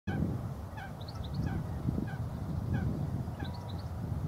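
Wild birds calling: a short call repeated about every half second to second, with a few quick high rising chirps about a second in and near the end, over a steady low rumble.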